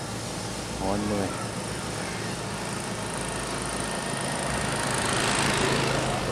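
A motorbike coming along the road, its engine and tyre noise growing louder over the last few seconds as it nears.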